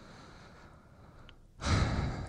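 A man's sigh: a breathy exhale into the microphone that starts suddenly about one and a half seconds in after a quiet pause, then fades.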